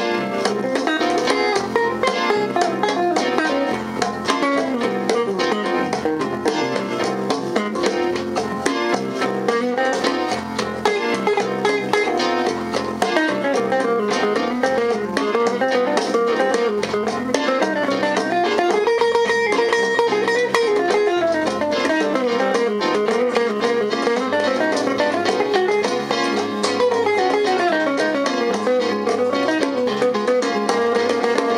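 A small band playing an instrumental funk-jazz tune live, with electric bass, guitar and keyboard, and a melody line winding up and down over the steady accompaniment.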